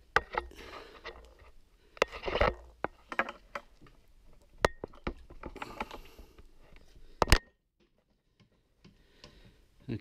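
Hand work on a Ducati 848's radiator as it is dropped forward off its mount: scattered clicks, knocks and scrapes of plastic and metal parts, with a loud double click about seven seconds in.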